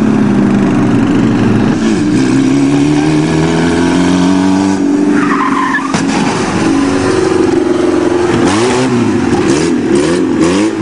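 Engine of a VW Golf stunt car with a roll hoop revving hard in reverse as it tips up onto its rear, the pitch rising and falling with the throttle. A brief squeal comes about five seconds in, and quick swooping revs follow near the end.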